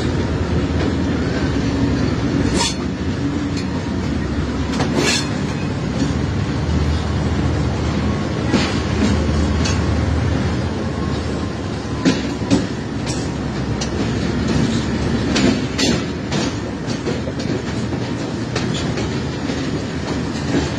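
Diesel locomotive running under way, heard from inside its cab: a steady engine and running rumble, with sharp wheel clacks over rail joints at irregular intervals.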